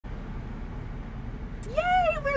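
Steady low rumble of surrounding traffic and outdoor noise heard in an open-top convertible. Near the end a woman's voice starts a high, drawn-out greeting that rises in pitch.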